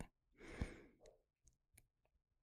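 Near silence, with a man's faint sigh about half a second in, followed by a few faint clicks.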